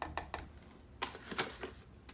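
Small scoop tapping a few times on the rim of a plastic container, knocking powdered milk paint into the water, then a second short cluster of clicks and scrapes about a second in as the scoop goes back into the bag of powder.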